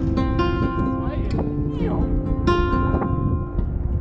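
Acoustic guitar music: chords are strummed and left to ring, with new strums at the start, about half a second in, and about two and a half seconds in. About a second in, a voice slides up and down in pitch over it.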